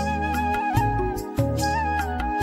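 Background music: a flute-like melody over a steady bass and percussion beat.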